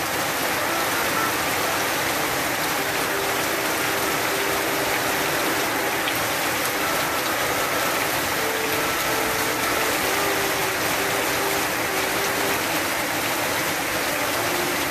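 Heavy rain falling steadily, with honeybees buzzing in short spells as they fly close past the hive entrance.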